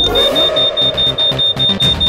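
Cartoon wristwatch communicator ringing with an incoming call: a rapid, high-pitched electronic beeping, about five beeps a second, over background music.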